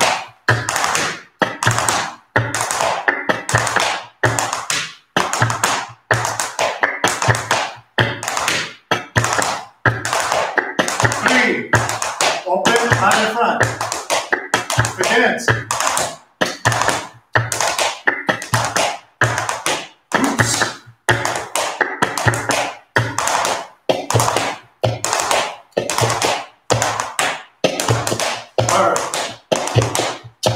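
Flamenco dance shoes striking a wooden floor in a steady, repeating footwork pattern of heel and sole taps, the same step drilled over and over.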